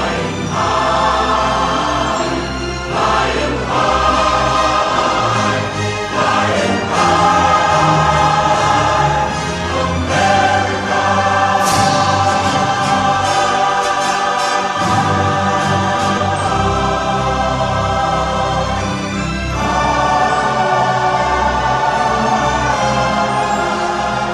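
Choir singing a sustained anthem-like finale over orchestral accompaniment, with held chords above a steady bass and a brief bright high flourish about halfway through.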